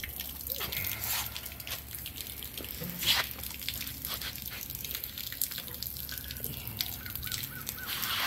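A thin jet of water under hose pressure spraying out of a heat exchanger's open fitting and spattering onto a metal bench, with scattered drips.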